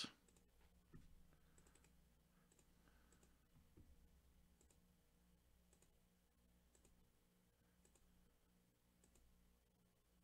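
Faint computer mouse clicks every second or so, over near silence: a mouse button being pressed repeatedly.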